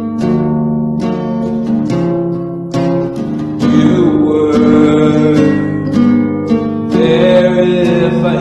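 Solo acoustic guitar playing chords with regular strokes. From about halfway, a voice joins and sings over it.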